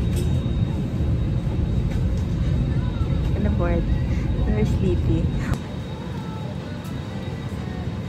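Airliner cabin noise: a loud, steady low rumble from the aircraft, with faint voices over it, dropping suddenly to a quieter hum about five and a half seconds in.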